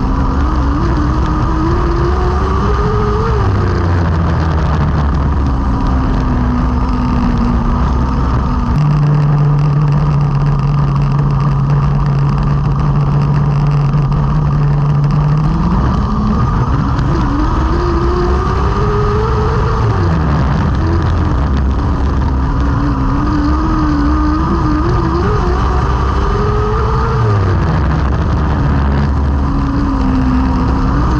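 TQ midget racing car's engine heard onboard, revs rising and falling with each lap through the corners, held steady for several seconds midway, with sharp drops in pitch where the throttle comes off.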